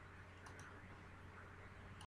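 Near silence: faint room hum, with two quick faint clicks about half a second in.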